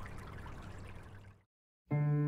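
Faint hiss of location room tone fading out into a brief dead silence, then piano music starts just before the end.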